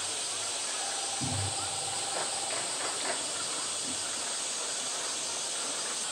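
Steady high-pitched hiss of outdoor background noise. A low thump comes about a second in, and a thin steady tone lasts under two seconds.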